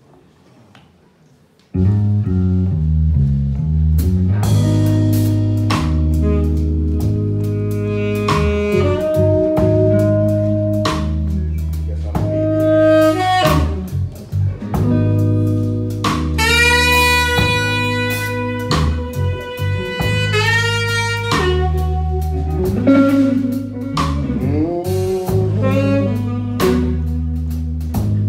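Live blues-soul band playing the instrumental intro of a slowed-down song: bass and drums come in suddenly about two seconds in, with a saxophone carrying long held melody notes over electric guitar.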